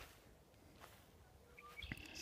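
Near silence outdoors, with faint bird chirps near the end.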